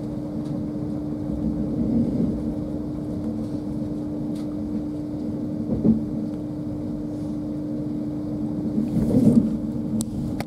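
Cabin noise inside an LNER Azuma Class 801 electric train running at speed: a steady low rumble from the wheels and running gear with a constant hum. There are a few brief louder bumps, the loudest about nine seconds in.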